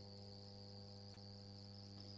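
Near silence between speech: a faint steady low hum with a thin, steady high-pitched whine above it.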